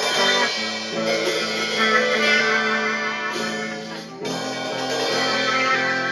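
Electric guitar played through effects pedals, ringing chords and held notes that change about once a second, with a short drop in loudness about four seconds in before it picks up again.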